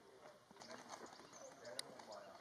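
Near silence, with faint distant talk from the people on the training pitch and a few light clicks, the sharpest near the end.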